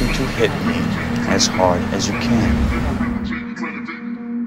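The phonk beat's heavy bass cuts out just after the start, leaving quieter film audio: a steady low hum and a rumble like a passing car, with snatches of a man's voice.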